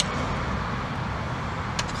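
Steady low outdoor background rumble during a pause in conversation, with a faint short tick near the end.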